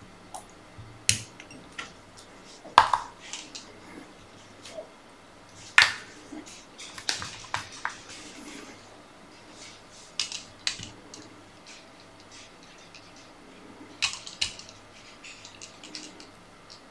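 Irregular small clicks, taps and handling noises of fly-tying tools and materials being worked at a vise, with the sharpest clicks about 3 and 6 seconds in.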